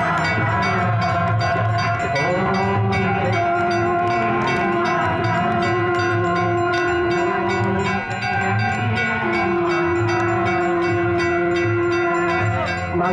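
Ganga aarti ceremony sound: hand bells ringing rapidly and continuously, mixed with amplified devotional aarti music carrying long held notes over a pulsing low beat.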